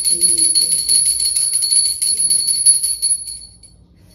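Brass puja hand bell (ghanti) rung rapidly and steadily during worship, with a clear high ring. It stops about three and a half seconds in and rings out briefly.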